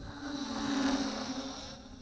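MJX Bugs 2W quadcopter's brushless motors and propellers buzzing as it flies past, growing louder to about a second in and then fading.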